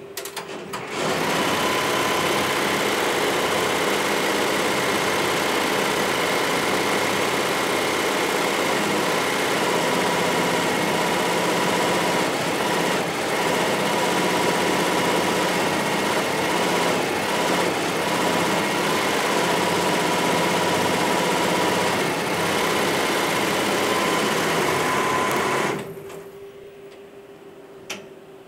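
A ZSK embroidery machine is started and runs steadily, stitching at about 1,000 stitches a minute. It sets in about a second in and stops suddenly a couple of seconds before the end.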